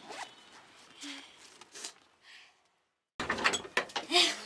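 Zipper of a shoulder bag being pulled in three short strokes about a second apart. Near the end a louder burst of clattering noise starts abruptly.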